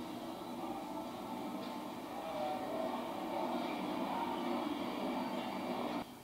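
Steady low drone of a film soundtrack's background ambience, with a few faint held tones and no dialogue.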